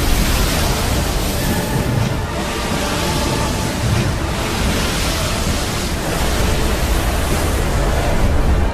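Loud, steady rushing of churning sea water and wind, with no let-up and no single sudden event.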